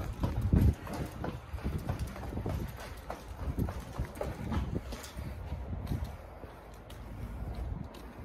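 Footsteps hurrying down a flight of outdoor stairs: a quick, uneven run of footfalls, loudest at the start and trailing off near the end.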